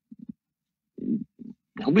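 A man's voice: a few short, low hesitation sounds in a pause, then speech resuming near the end.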